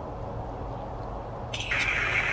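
A Necrophonic ghost-box app sounds from a handheld phone's speaker: a steady low rushing static, then a sudden louder burst of harsh, higher-pitched noise about one and a half seconds in.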